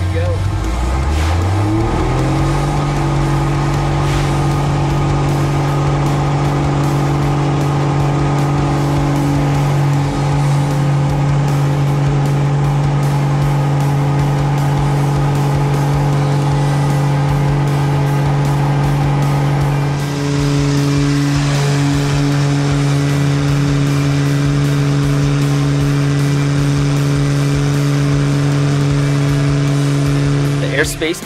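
Pitts Special biplane's piston engine and propeller heard from inside the cockpit. The engine note rises over the first two seconds as the throttle opens for takeoff, then holds steady at full power for the rest of the climb-out.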